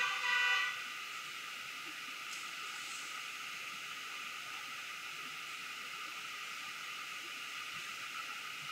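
Steady, even hiss of background noise with no distinct sound in it: room tone of the recording. A faint, brief tone trails off in the first moment.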